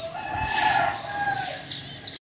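A rooster crowing: one long call that rises a little in pitch and lasts about a second and a half.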